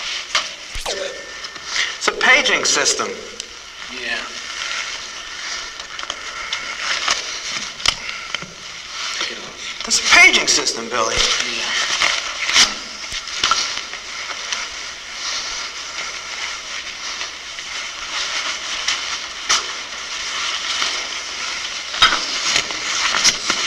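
Covert body-wire transmitter recording: steady hiss and crackling static over voices too indistinct to make out.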